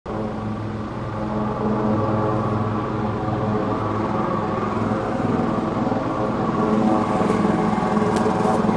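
Helicopter running on the ground with its rotors turning: a loud, steady engine-and-rotor drone that grows slightly louder.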